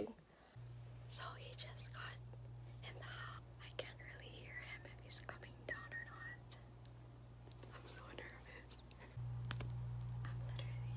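A woman whispering quietly, over a steady low hum that gets louder about nine seconds in.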